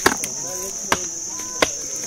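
Three sharp strikes of a hand digging tool biting into an earth bank, about a second apart, over a steady high-pitched chorus of crickets.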